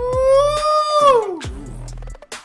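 A man's loud, long falsetto 'ooooh', rising a little, held about a second and then sliding down, over the deep bass hits of the K-pop track playing underneath.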